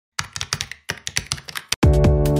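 Computer keyboard typing, about a dozen quick, uneven keystroke clicks. Near the end electronic music comes in with a deep held synth chord and a kick drum.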